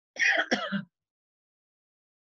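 A woman clearing her throat: one short, rasping burst in two pushes within the first second.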